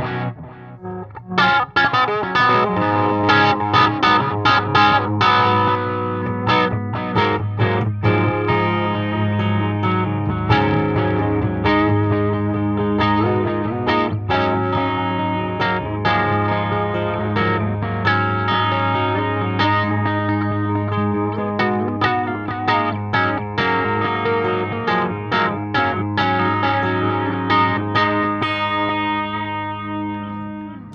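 Electric guitar played through an Eventide H9 pedal set to a tape-type delay preset. Picked notes and chords ring over a sustained low note, with the delay carrying each note on.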